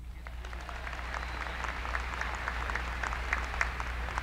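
A large audience applauding, the clapping building slightly louder over a few seconds, over a steady low electrical hum.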